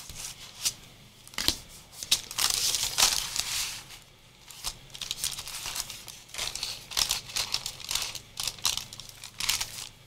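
Thin painted paper crinkling and rustling in irregular bursts as it is rubbed and pressed down onto a card cover with a flat wooden tool and by hand.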